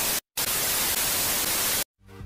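TV static sound effect: a steady hiss of white noise, broken by a brief dropout just after the start and cut off abruptly shortly before the end, used as a 'no signal' glitch transition.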